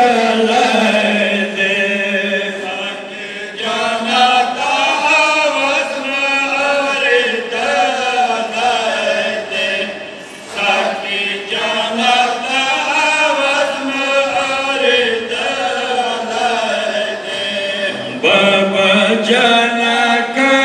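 A group of men chanting a Pashto noha, a mourning lament, together in long melodic phrases. The chant dips briefly about three and ten seconds in and swells louder near the end.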